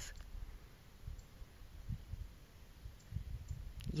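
Pause between spoken phrases: faint low rumble with a few soft clicks, and the voice coming back right at the end.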